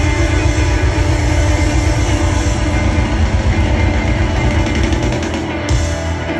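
Live rock band playing loud, with several electric guitars.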